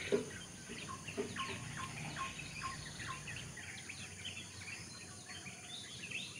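Birds chirping: a quick run of short, downward-sliding chirps, several a second, thinning out after about three seconds, over a faint steady high hum.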